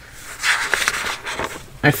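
A paper notebook page being turned: a papery rustle starting about half a second in and lasting about a second.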